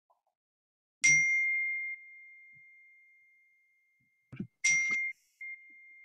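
A high, bell-like ding, struck twice about three and a half seconds apart, its single clear tone ringing on and fading between the strikes.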